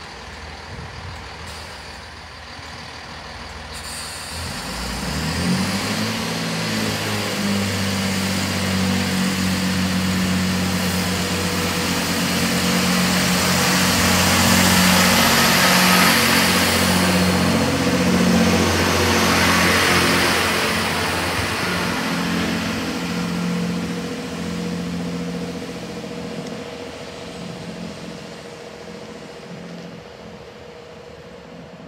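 GWR Turbo diesel multiple unit powering past, its underfloor diesel engines rising in pitch a few seconds in and then running steadily. Wheel and rail noise builds to a peak about halfway as the coaches pass close, then fades as the train draws away.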